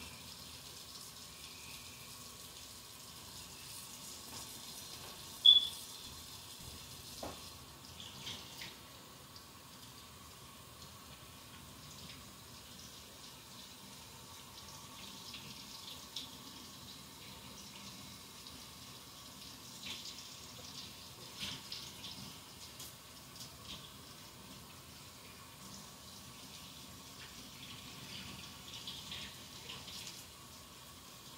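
Tap water running into a sink while hands and wrist are washed, with a sharp click about five seconds in and a few lighter knocks later.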